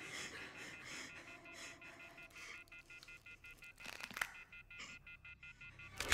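Faint, tense horror film score: quiet high tones pulsing steadily over a low haze, with a soft hit about four seconds in.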